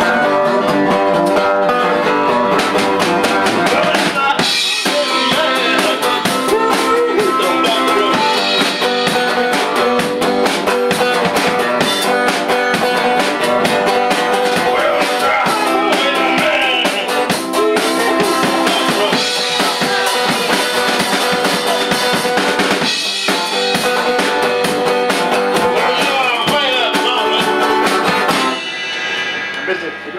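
A live band playing, with a full drum kit keeping the beat under guitar. The music drops away near the end.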